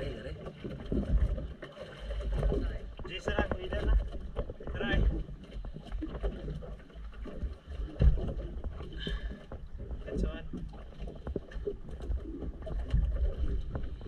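Wind buffeting the microphone on a small boat at sea, with faint voices now and then and a single knock about eight seconds in.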